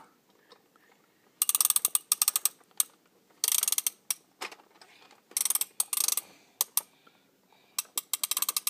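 Rapid mechanical clicking in about five short bursts, each a fast run of ratchet-like clicks, with single clicks between them and quiet gaps.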